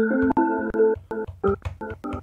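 Slices of a chopped melody loop played back in FL Studio's SliceX, triggered one by one from a pad controller. A longer keyboard-like phrase is followed by several short snippets, each cut off abruptly.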